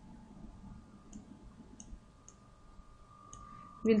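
Faint, sparse clicks, about four in three seconds, from the pen or mouse used to write on screen. They sit over low hiss and a faint steady high whine.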